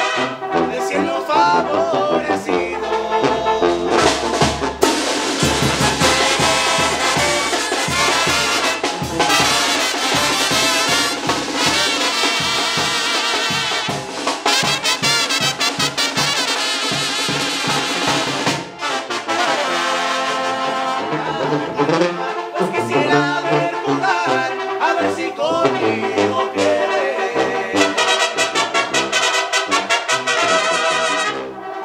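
Live Mexican banda brass band playing, with trumpets and trombones carrying the melody over clarinets, loud and continuous.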